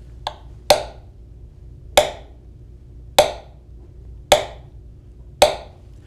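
Small hammer tapping the steel start probe of a stress wave timer (Fakopp Microsecond Timer) driven into a timber piling. There is a light tick, then five sharp taps a little over a second apart, each ringing briefly. Each tap sends a stress wave across the wood to the second probe to be timed. The readings come out very consistent, about 300 microseconds per foot.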